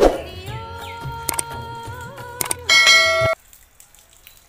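Subscribe-button animation sound effects: a sudden clang with ringing tones at the start, a few sharp clicks, then a loud bell-like chime that cuts off suddenly a little after three seconds in.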